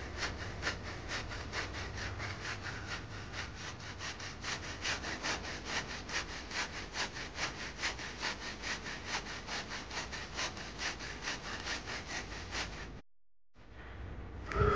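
Hand saw cutting through a living durian tree trunk, in steady back-and-forth strokes at about three a second. The sound cuts off suddenly about a second before the end.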